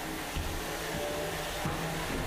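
Steady whirring hiss of a 3 lb combat robot's spinning horizontal bar weapon running at speed, with a low thud about half a second in.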